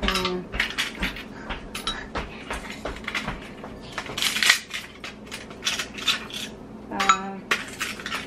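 Ice cubes dropped by hand one after another into a blender jar, each landing with a hard clink and knock against the jar and the ice already in it, with rattling between drops as more cubes are handled.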